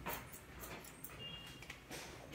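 Faint snips of hair-cutting scissors closing on a section of wet hair, with a brief high-pitched whine a little over a second in.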